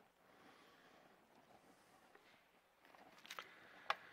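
Near silence: faint room tone, then a few soft paper rustles and a light click near the end as Bible pages are turned on a pulpit.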